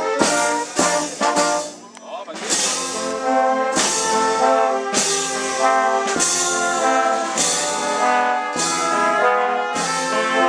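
Brass band (trombones, trumpets or flugelhorns, tuba and saxophone over a bass drum) playing a slow march. The bass drum beats steadily about once every second and a quarter, with a short break in the playing about two seconds in before the full band comes back.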